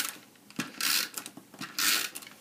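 Paper and cardstock rubbing and sliding under hands on a craft mat, in two short bursts.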